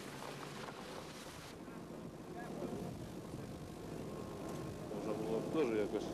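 A car rolls slowly through mud and standing water, its engine and tyres low under the general outdoor noise, with people talking. Near the end a man says a word in Russian.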